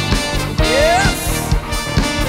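Upbeat live band dance music with no vocals: saxophone and trumpet playing over a steady drum beat, with a rising glide about halfway through.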